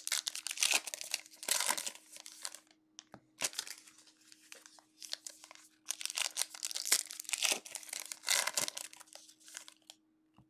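Foil wrappers of Panini Illusions football card packs being torn open and crinkled by hand, in several bouts of tearing and rustling a second or two long with short pauses between.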